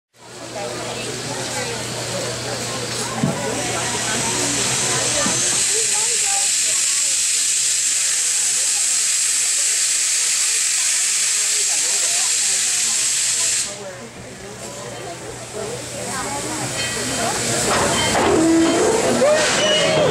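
Coal-fired 2-8-2 steam locomotive No. 192 venting steam with a loud, steady hiss that cuts off suddenly about 14 seconds in.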